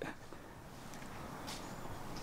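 Faint, steady outdoor background noise, with a single light click about one and a half seconds in.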